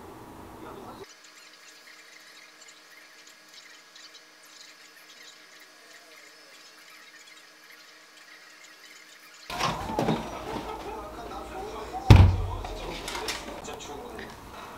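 Quiet room sound, then rustling and clattering as a cake in a clear plastic container is handled on a tabletop, with one loud knock near the end.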